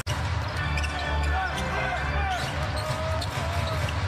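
Basketball dribbling on a hardwood court during live NBA play, over a steady arena background rumble.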